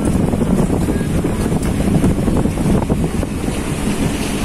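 Wind buffeting the microphone on an open boat deck at sea, a steady loud low rumble.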